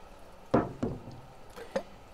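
Three knocks from a Dresser Roots rotary gas meter being worked by hand to free its impellers of debris: a loud one about half a second in, a second just after, and a lighter one near the end.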